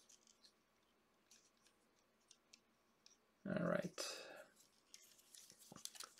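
Faint, scattered small clicks of a plastic action figure's joints and parts being handled and fitted. About three and a half seconds in comes a short wordless vocal sound that trails into a breath out.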